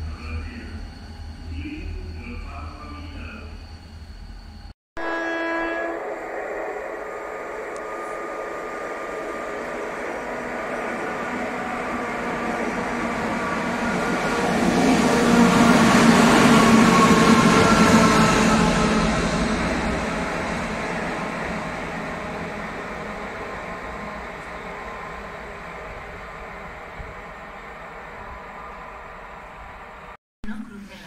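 A low rumble from a distant standing locomotive, cut off about five seconds in; then a brief locomotive horn blast, and a pair of locomotives running light approaches, passes at speed with its loudest point just past halfway, and fades away.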